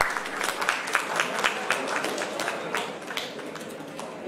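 Audience applauding: many overlapping hand claps that thin out and fade near the end.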